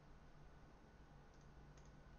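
Near silence: room tone with a low hum and two or three faint clicks in the second half.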